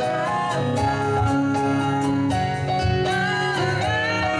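Live acoustic band music: women singing over strummed acoustic guitar and piano.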